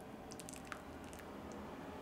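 Faint pouring of egg-drop broth from a pot into a bowl of udon, with small splashes and drips. The stream thins and stops about halfway through.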